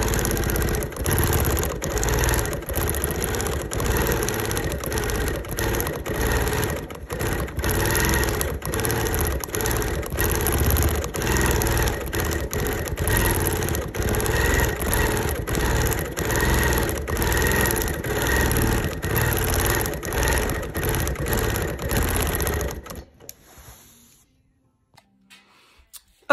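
Sewing machine stitching steadily through the thick layers of a fused-appliqué collage quilt, running for about 23 seconds and then stopping.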